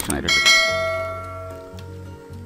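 Notification-bell chime sound effect from a YouTube subscribe-button animation: a single bright ding about a third of a second in, ringing on and fading away over about a second and a half.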